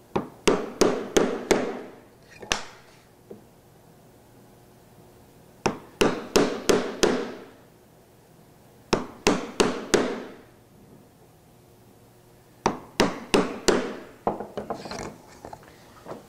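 Wooden mallet striking a chisel to chop out the waste between through-dovetail pins or tails, taking a shallow bite each time. Four bursts of five or six quick, moderate strikes each, a few seconds apart, with lighter taps near the end.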